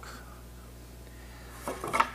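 Low steady hum of a quiet woodshop, with a short wooden knock near the end as two cleat strips are pulled apart.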